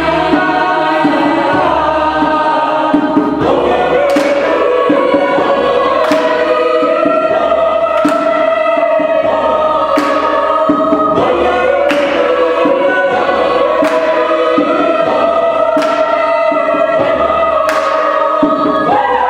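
Mixed chamber choir singing a cappella in sustained, shifting chords, with sharp percussive accents about every two seconds from about four seconds in, taken here as hand claps.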